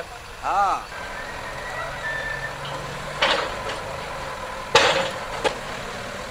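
Natural sound from the demolition of a concrete building by heavy machinery: a vehicle working, with two short loud bursts of noise about three and five seconds in.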